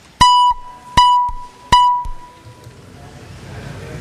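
Three loud electronic beeps of one fixed pitch, about three-quarters of a second apart, the last one ringing out longest. They sound as the chamber's roll-call vote opens.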